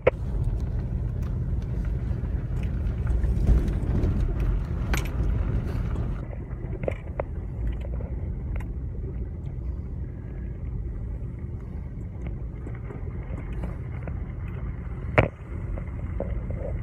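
A vehicle driving, heard from inside the cab: a steady low rumble of engine and tyres on a gravel road, with scattered small rattles and clicks and one sharp knock near the end.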